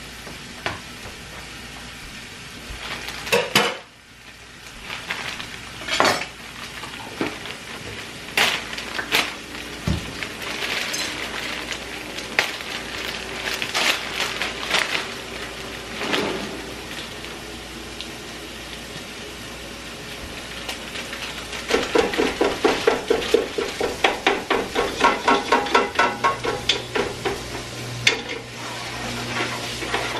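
Kitchen clatter of utensils and dishes: scattered clinks of a knife and utensils against plates and containers over food sizzling in a frying pan. About two-thirds of the way in comes a fast, regular run of clinks as a utensil works in the pan, and near the end a low steady hum starts.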